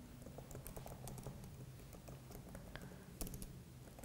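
Faint typing on a computer keyboard: a run of light, quick keystrokes, with a couple of louder key presses a little after three seconds in.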